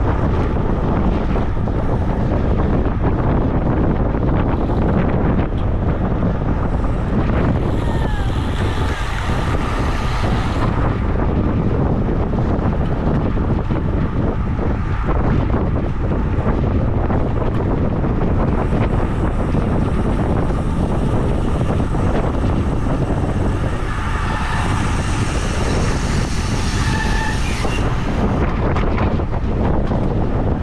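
Wind buffeting the microphone of a bike-mounted camera at racing speed, a steady loud rumble. Two stretches of brighter hiss come in, about eight seconds in and again near the end.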